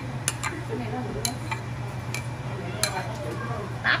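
A ladle tapping and scraping against a bowl and the rim of a soup pot as vegetables are scooped into the broth: about half a dozen sharp, separate clicks over a steady low hum.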